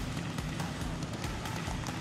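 Steady arena background sound with faint music under it.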